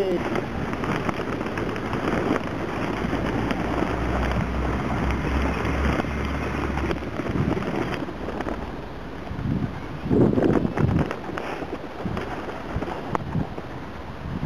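A flock of feral pigeons flapping and fluttering their wings as they take off from a hand and crowd around scattered food, a dense run of wing-beats. Wind rumbles on the microphone for a few seconds in the middle, and a brief voice sounds about ten seconds in.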